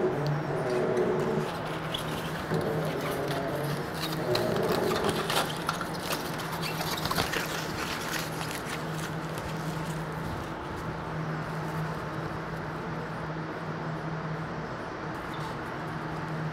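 Steady low hum of lab equipment, with scattered small metal clicks and rattles of hardware being handled, busiest in the middle.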